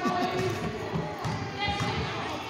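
Basketball bouncing on a hardwood gym floor, several irregular thuds, under the chatter of players and spectators.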